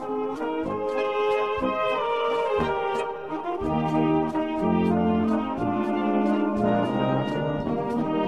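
Bohemian-style brass band playing an instrumental piece: tenor horns and baritones in held, layered notes over a moving tuba bass line, with a steady drum and cymbal beat.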